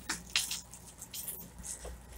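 Faint handling noise: a few light clicks and rustles as a grow tent's frame bar is worked loose from its fitting.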